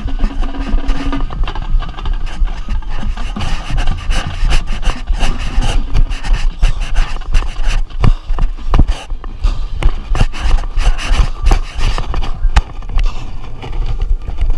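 Rubbing and scraping handling noise on a microphone mounted on a sousaphone, with a heavy low rumble and irregular knocks, as the player moves the horn across the field.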